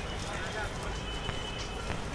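Busy street-market ambience: a steady murmur of background voices from shoppers and stallholders, with a few light clicks and knocks.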